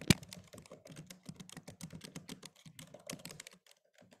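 Typing on a computer keyboard: a quick, uneven run of key clicks, a few louder strokes at the start, stopping just before the end.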